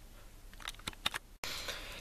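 Faint room hiss with a few small clicks a little over half a second in. The sound drops out completely for an instant about halfway through, as at an edit cut.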